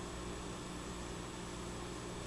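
Steady hiss with a low electrical hum underneath, unchanging throughout: background noise of the recording.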